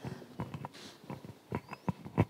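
Irregular footsteps and knocks on a hard floor, several short taps, the loudest near the end, with a faint brief squeak about three-quarters of the way through.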